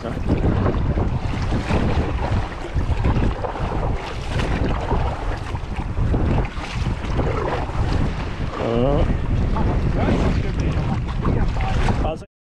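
Steady wind buffeting the camera's microphone over the splash and lap of sea water around a kayak.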